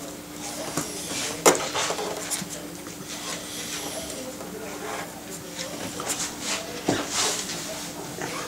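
Handling sounds of a newborn puppy being picked up off a plastic weighing tray: a sharp knock about a second and a half in, rustling, and another knock near the end, over a steady low hum.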